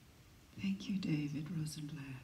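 Soft speech into a microphone, beginning about half a second in after a near-quiet moment.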